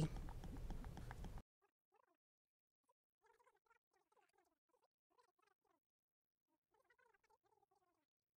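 Near silence: a faint background hiss that cuts off about a second and a half in, leaving the track silent.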